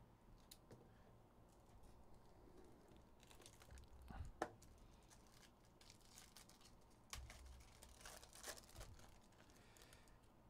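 Faint crinkling and tearing of a foil trading-card pack wrapper as it is handled and ripped open by hand, in short scattered rustles. The sharpest bit comes about four seconds in, with more crinkling and tearing near the end.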